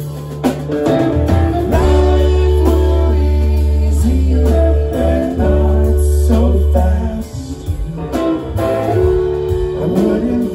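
Live band playing: electric guitar, electric bass, drum kit and keyboard together, with long held bass notes that drop away about seven seconds in.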